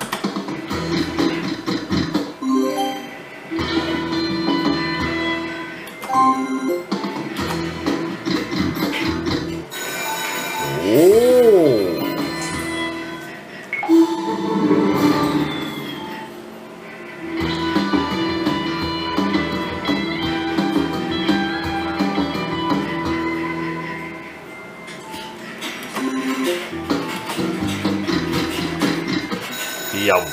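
Slot machine game audio: continuous melodic jingles and chiming tones while the reels spin, with a rising-then-falling swoop about 11 seconds in.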